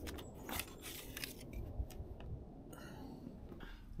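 Faint, scattered light clicks and handling noises from hands working on a motorcycle as the seat comes off.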